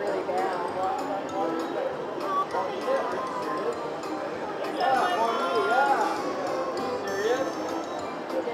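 Video slot machine playing its free-spins bonus music, with clicks as the reels stop and a run of bright chimes in the second half as a win is added up, over the background chatter of a casino floor.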